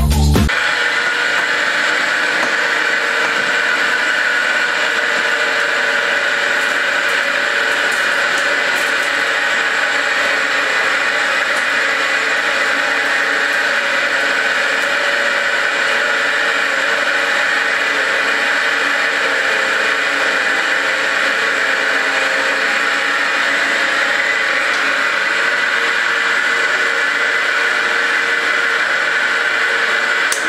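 A century-old roller refiner (cylinder mill) running steadily as it grinds a coarse almond-and-caramel mix into praliné: an even, unbroken mechanical whir with a strong hiss. Music cuts off right at the start.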